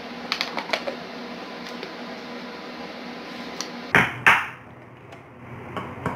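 Plastic clicks, then two sharp knocks about four seconds in, as the lid and plastic blade are taken off a small electric food chopper.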